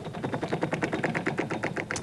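Game-show prize wheel spinning, its pointer flapper ticking rapidly against the pegs at about a dozen clicks a second.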